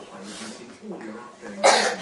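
A person coughing once, loudly and briefly, near the end, over faint television speech.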